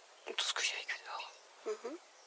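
A person speaking softly, close to a whisper, in two short phrases.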